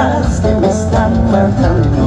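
Live band music amplified through a stage sound system: guitars with a steady bass beat and sung melody.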